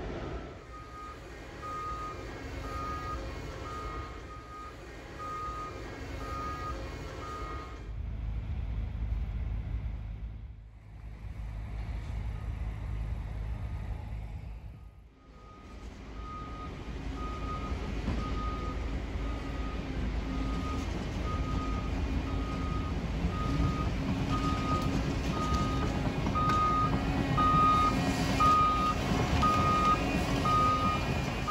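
Heavy-equipment backup alarm beeping about once a second over the rumble of machinery engines at a track-repair site. The beeping drops out for several seconds in the middle, where there is only engine rumble, then returns and is loudest near the end.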